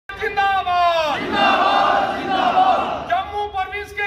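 A man shouts a slogan. A crowd of men shouts the response back in unison, and he calls out again near the end: call-and-response protest chanting.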